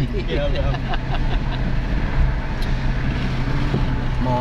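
Steady engine and road hum heard inside the cabin of a moving car.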